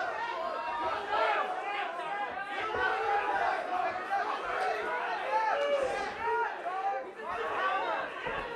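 Spectators around the cage shouting and talking over one another: many overlapping voices, none clear on its own.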